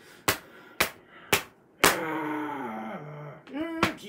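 Two hardcover picture books smacked together, four sharp slaps about half a second apart. A man's drawn-out voice sliding down in pitch follows, then a short rising voice and one more slap near the end.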